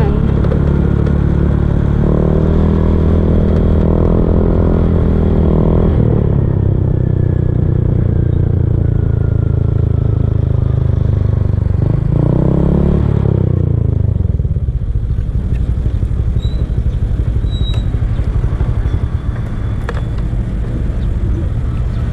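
Small motor scooter engine running at low speed. About twelve seconds in it revs up and back down, then runs quieter as the scooter slows to park.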